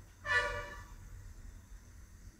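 A single short horn toot, about half a second long, fading away quickly.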